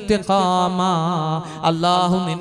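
A man's voice chanting through a microphone in a melodic, drawn-out delivery, holding long wavering notes, with a short break about three-quarters of the way through.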